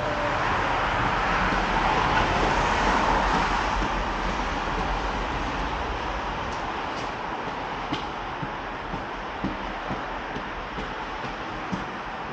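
A train passing close by on the rail line: a steady rumbling rush that swells to its loudest about two to three seconds in, then slowly fades. Sharp footsteps on concrete come through in the second half.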